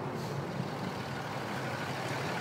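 Diesel truck engine running steadily, really loud.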